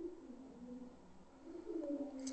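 A pigeon cooing faintly: a few soft, low coos, each falling slightly in pitch.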